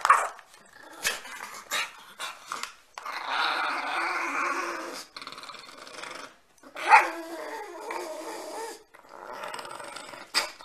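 Pug growling in two long, rasping stretches, with a short, sharp, louder outburst between them.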